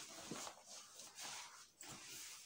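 Soft rustling of fabric bags and straps being handled as a tote bag is picked up and lifted onto the shoulder.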